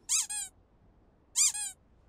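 A squeaky plush toy rabbit squeezed twice, about a second apart. Each squeeze gives a quick, high double squeak.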